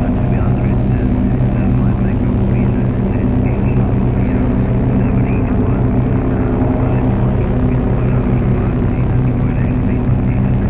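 Live electronic drone music from a synthesizer: sustained low tones held steady under a dense noisy upper layer flecked with short chirping glides.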